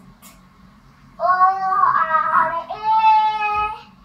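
A young child's voice in two long, held, sing-song phrases, starting about a second in.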